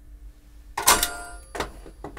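Flint spark striker snapped once about a second in, a sharp metallic strike with a brief ringing tail, then a smaller click. It is lighting the gas burner of a vintage Bernzomatic camp stove.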